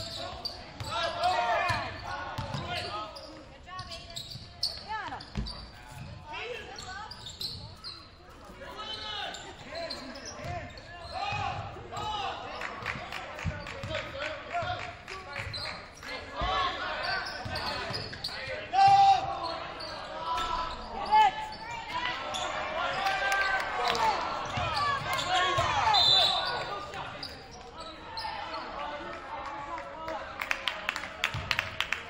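Basketball game in a gym: a ball bouncing on the hardwood floor during play, over a steady mix of shouting players and spectator voices, with short squeaks that are typical of sneakers on the court.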